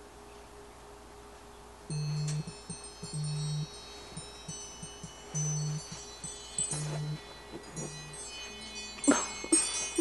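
Phone alarm going off: a repeating chime ringtone with a low note under each phrase, starting about two seconds in.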